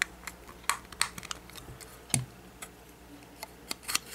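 Irregular small plastic clicks and taps, about ten of them, as LEGO pieces are handled and the pins of a seat frame are pressed into the holes inside a clear plastic gyrosphere shell.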